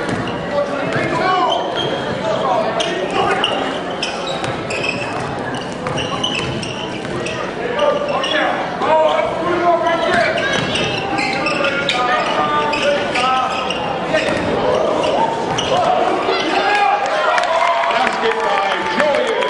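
A basketball being dribbled on a hardwood gym floor during live play, with players and spectators shouting and talking throughout, echoing in a large gym.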